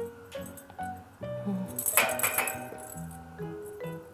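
Background music with a simple melody, and about two seconds in a short jingling rattle of a small bell inside a kitten's plastic toy ball as it is batted about.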